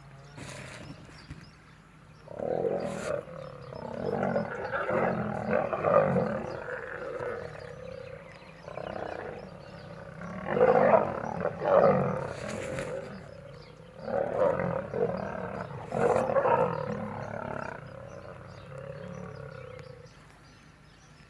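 Male lions snarling and growling at each other in a fight, in several loud bouts of a few seconds each, starting about two seconds in, with short quieter pauses between.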